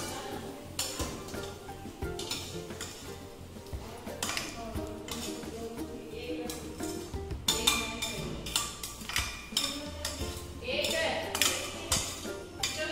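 A metal spoon clinking and scraping against a stainless steel frying pan as its fried spice mixture is scraped out into a steel pressure cooker of dal: a run of short knocks and clinks, over background music.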